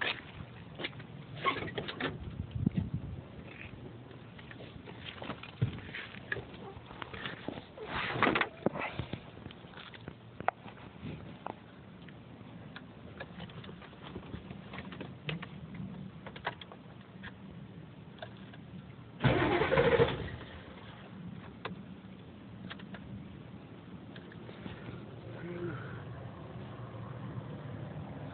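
Clicks and knocks from the truck's door and cab, then the 1986 Ford F-350's 6.9 L non-turbo diesel V8 cranking and catching in a short loud burst about two-thirds in, after which it idles steadily.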